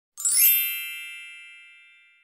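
A bright chime sound effect for the intro logo: a quick sparkling shimmer that rings on in several steady tones and fades away over about two seconds.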